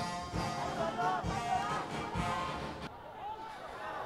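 Stadium crowd sound: a supporters' drum beating steadily, about two beats a second, under voices chanting, easing off near the end.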